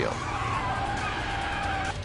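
Car tyres screeching in a skid: a steady squeal that sinks slightly in pitch and stops just before speech resumes.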